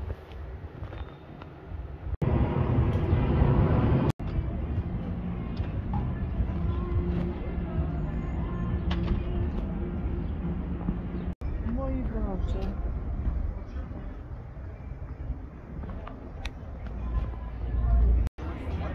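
Indistinct voices over steady background noise, broken by several abrupt cuts between short clips; the noise is loudest for about two seconds near the start.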